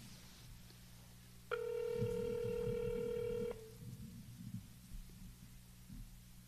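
A telephone ringing tone of a call being placed: one steady two-second tone starting about a second and a half in, over a low muffled murmur.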